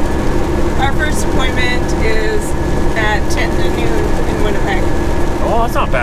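Steady drone of a semi truck's diesel engine and tyre noise heard inside the cab at highway speed.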